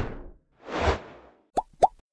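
Cartoon-style sound effects for an animated logo: a soft whoosh swells and fades about a second in, then two quick bubbly pops with a rising pitch near the end, as the intro music dies away.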